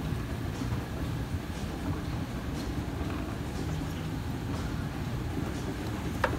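Moving escalator running: a steady low rumble from the steps and drive, with a few faint irregular clicks.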